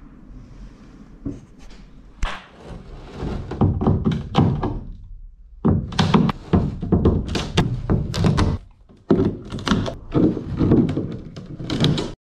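Cable-tie stitches being cut with hand cutters and pulled out of an epoxy-filleted plywood hull seam: irregular runs of clicks, snaps and knocks, with short breaks about five and nine seconds in.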